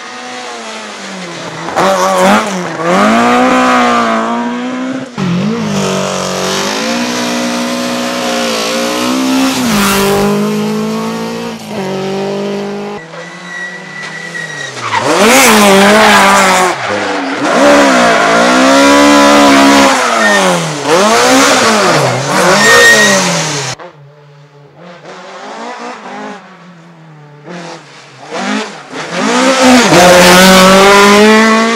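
Rally cars, among them a Ford Escort Mk2, driven hard one after another. Their engines rev high, the pitch climbing through the gears and dropping at each shift or lift-off. It is loud throughout except for a quieter spell about three-quarters of the way through, before the next car comes in loud near the end.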